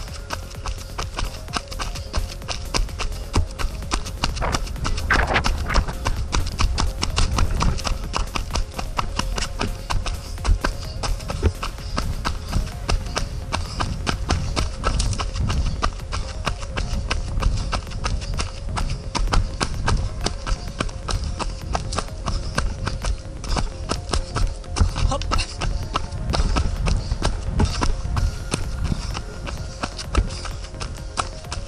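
A runner's footsteps on a dirt trail, a steady running rhythm of shoe strikes.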